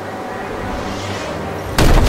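Explosion sound effect from an animated show's soundtrack: a low steady rumble, then near the end a sudden loud boom that carries on as a heavy rumble.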